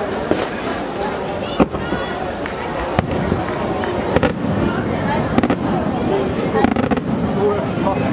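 Aerial firework shells, most likely cylinder shells, bursting one at a time: a run of sharp bangs about a second apart, with spectators chattering throughout.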